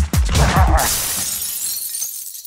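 An electronic dance beat stops under a shattering crash sound effect about half a second in. The crash trails off into a high hiss that fades over about a second and a half.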